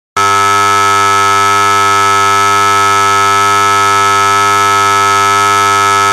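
A loud, steady electric buzzer tone that starts a moment in and holds one unchanging, harsh pitch.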